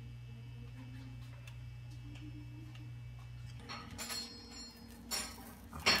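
Kitchen clatter of a skillet and utensils: a steady low hum with faint ticks, then from a little past halfway a run of clinks and scrapes, the sharpest two near the end, as the cooked crepe is loosened and turned out of the pan onto a plate.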